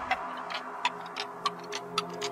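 Electronic club music in a stripped-down breakdown, with no bass or kick drum. Only sparse, sharp ticking percussion is left, about three clicks a second.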